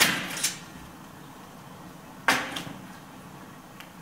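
Stainless steel flue pipe parts knocking as they are handled with gloved hands. Two quick knocks come right at the start, and a sharper one a little past two seconds in dies away over about half a second.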